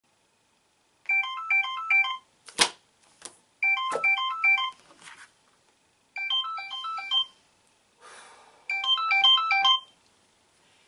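Phone ringtone: a short melody of quick stepped notes, played four times about two and a half seconds apart. Two sharp knocks fall between the first and second rings, and a brief rustle comes just before the last.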